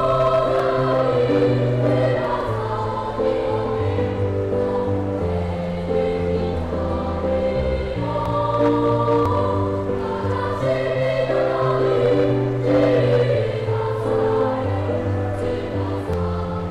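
Elementary school children's choir singing.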